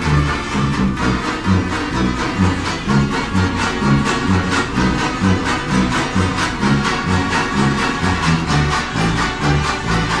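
A banjo band playing an instrumental tune: many banjos strumming chords in a brisk, steady rhythm over a low, bouncing bass part.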